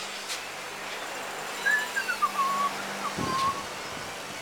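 A few whistled notes, stepping down in pitch over about two seconds, with a low thump near the end.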